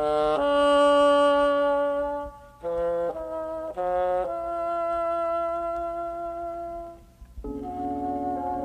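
Slow jazz: a horn plays a phrase of held notes, one long note, then three short ones, then another long held note, over a soft low backing. A new phrase begins near the end.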